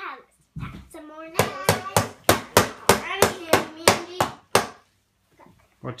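A toddler's toy tool pounding rapidly on a wooden chest: a run of about a dozen sharp knocks, roughly four a second, lasting some three seconds.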